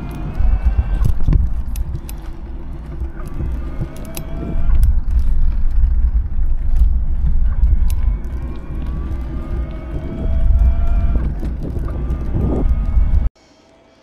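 Wind buffeting the camera microphone and bike tyres crunching over a gravel path while riding, with a faint electric-motor whine rising in pitch several times. The sound cuts off suddenly near the end.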